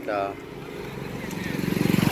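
Motorcycle engine approaching, growing steadily louder with a fast, even beat and passing close by near the end.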